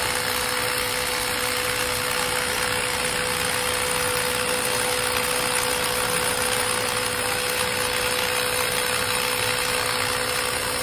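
Makita 40V cordless rotary hammer with dust-extractor attachment drilling steadily into a concrete wall, a continuous hammering rattle with a steady motor hum.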